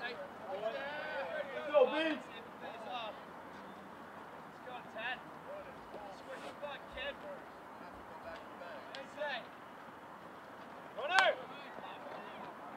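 Scattered shouts and chatter from players and spectators around a baseball field. One short, loud yell comes near the end.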